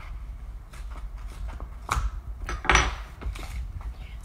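Paper envelope being torn open and its contents handled: a few short rustles and crinkles, the loudest about three seconds in, over a low steady hum.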